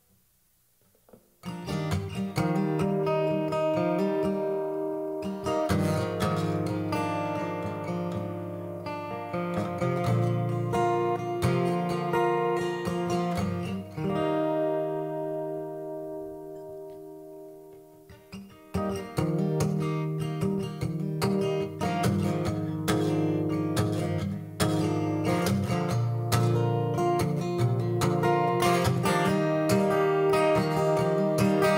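Acoustic guitar intro, strummed and picked chords starting about a second and a half in. The playing thins and fades to a low point a few seconds past the middle, then comes back fuller about two-thirds of the way through.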